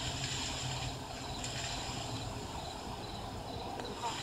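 Steady ambience of a forest at night: an even hiss with thin, high steady tones running through it, and a faint click near the end.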